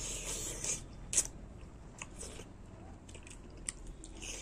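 A person biting and chewing dry smoked pork, with wet, crunchy mouth sounds. A sharp crunch comes about a second in, and a few softer clicks follow.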